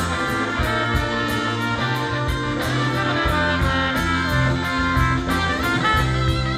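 Live rock band playing an instrumental break: trumpet and electric guitar over a steady drum beat.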